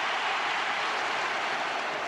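Stadium crowd cheering: a steady wash of crowd noise on an old archive recording of a football match.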